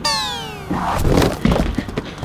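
A cartoon-style descending 'power-down' sound effect, several tones sliding down together over about the first second, followed by rustling and a couple of dull thuds.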